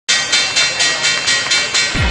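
Ticking sound effect, like a stopwatch or clock: sharp, crisp ticks, about four a second, steady.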